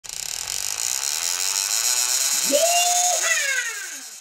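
Produced intro sound effect: a steady high whirring, joined about two and a half seconds in by sweeping tones that rise, hold, then slide down and fade.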